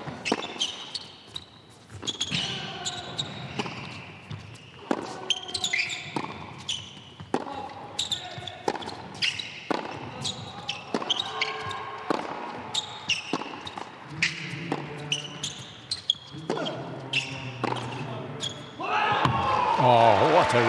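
Tennis rally on an indoor hard court: racket strikes on the ball about once a second, with ball bounces and players' grunts between them, echoing in a large hall. Near the end the crowd breaks into applause and cheering as the point ends.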